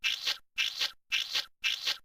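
A looping cartoon sound effect for cheese being shot over a character: short noisy bursts repeating about twice a second, each starting sharply and fading away.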